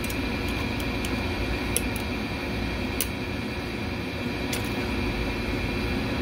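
Steady background hum, with a few faint, sharp metallic clicks as a pick works among the rollers of a Chrysler 727 transmission's reverse sprag (roller clutch), trying to straighten a roller that has turned sideways and will not go in.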